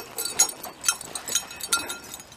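Footsteps on dry, sandy desert ground and brush, light crunches about twice a second, with a few faint metallic clinks near the end.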